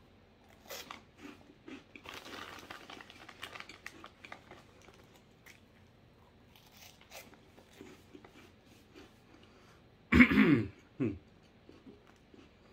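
Crunching and chewing a mouthful of jalapeño Cheez Doodles cheese puffs, scattered crisp crunches through the first eight seconds. About ten seconds in, a loud throaty vocal sound, then a shorter one.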